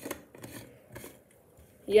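Faint rubbing and a few soft clicks of plastic as a hand grips and turns the blue screw cap of an O2COOL misting-fan water bottle, mostly in the first second.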